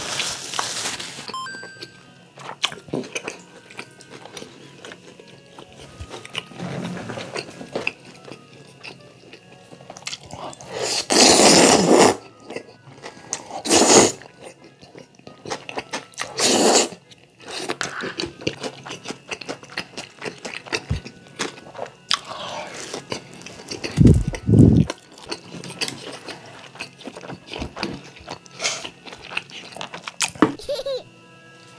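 Close-miked eating: jajangmyeon noodles slurped in several loud bursts, with chewing and small mouth clicks in between, over quiet background music. Later on come two low thuds.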